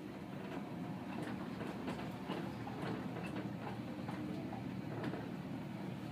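Traction elevator car travelling upward at speed, heard from inside the cab: a steady low rumble of travel with a few faint clicks.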